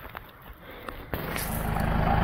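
Faint clicks, then about a second in the Mahindra Roxor's turbo-diesel engine idling steadily cuts in abruptly.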